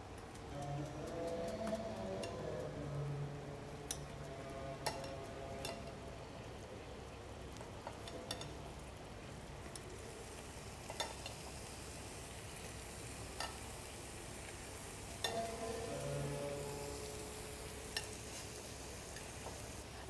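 Garlic and rabbit pieces frying in ghee and oil in stainless steel pans, giving a faint, steady sizzle. Scattered clicks come from a metal spoon and tongs knocking the pan as the garlic is stirred and the rabbit turned.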